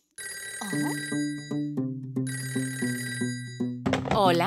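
A cartoon telephone ringing twice, in two long rings with a short gap between them. Under it plays children's song music with a steady beat of low plucked notes.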